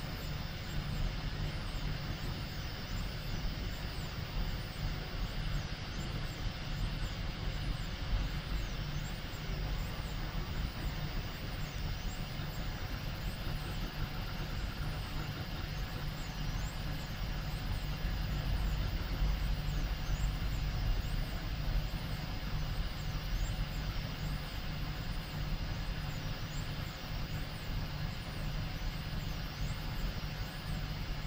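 A home-built 3D printer printing: its radial blower fan gives a steady hum, and faint, high-pitched whines rise and fall over and over as the stepper motors move the print head.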